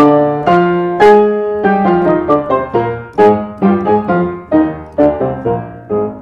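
A 1925 Blüthner upright piano, about 130 cm tall, restrung and pitch-raised, being played: chords and melody notes struck about twice a second, each ringing on as it fades.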